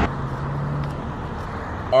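Steady outdoor road-traffic noise, an even hiss of passing vehicles, with a low hum under it that fades out about a second in.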